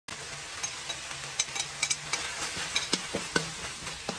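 Beef sizzling in a wok while a metal spatula stirs and scrapes it, with repeated clinks and scrapes of metal on the pan that grow louder in the second half.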